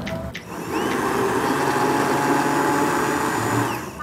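Handheld immersion blender running in a pot of soup, puréeing boiled daikon radish in milk. It starts about half a second in, runs steadily with a faint motor whine, and stops just before the end.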